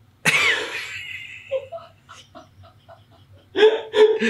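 A man bursts into a sudden, loud laugh that fades over about a second, then keeps laughing quietly in short, quick pulses, about five a second.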